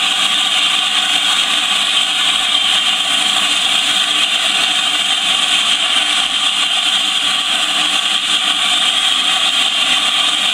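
LNER A4 Pacific locomotive Bittern standing still with steam escaping low down at the front, a loud steady hiss that does not change.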